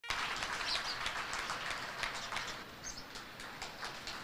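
Audience applause, many hands clapping over general hall crowd noise, easing off slightly toward the end.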